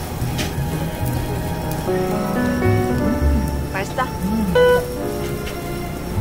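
Pork sizzling on a tabletop barbecue grill, a steady crackling hiss, with background music and voices over it.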